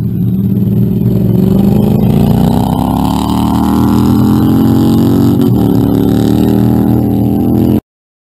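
A vehicle engine accelerating hard under full throttle, its pitch climbing steadily for about four seconds, dipping briefly as if in a gear change, then held high. The sound cuts off abruptly just before the end.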